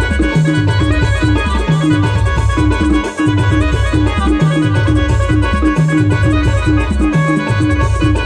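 Loud band music with no singing: an electronic keyboard plays a repeating riff of short notes over deep bass notes that pulse about every second and a quarter.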